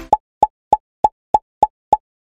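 A short pop sound effect repeated at an even pace, about three pops a second, with dead silence between them.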